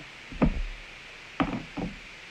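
Dull knocks and bumps close to the phone's microphone, as the phone or things beside it are jostled: one heavy thud with a low rumble about half a second in, then two lighter knocks near a second and a half.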